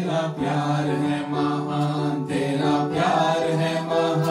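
A small group of voices singing a Christian worship song together, drawing out long held notes, with electronic keyboard accompaniment.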